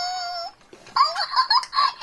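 A high-pitched voice: a drawn-out "wait" held on one pitch, then about a second of quick, wavering sing-song chatter or giggling.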